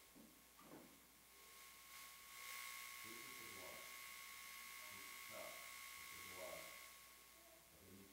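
Near silence: a faint distant voice speaking in a quiet room, under a steady high-pitched electronic whine with hiss that grows louder about two and a half seconds in and stops about seven seconds in.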